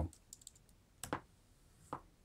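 A few quiet key presses on a slim computer keyboard, irregularly spaced, the clearest about a second in and another just before the end.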